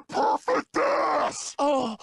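A cartoon man's pained groans and cries from a gunshot wound, in short broken bursts, the last one falling in pitch.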